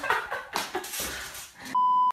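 Scuffling and handling noise from a shaky phone recording, then near the end a loud, steady, single-pitched electronic bleep lasting about a third of a second that cuts off abruptly, of the kind edited in to censor a word.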